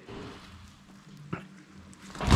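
Quiet knife work on a deer shoulder: a boning knife cutting meat, barely audible over a steady low hum, with one sharp click a little past the middle.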